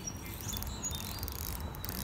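Outdoor ambience: a steady low rumble with a few brief, thin, high chirps from birds or insects.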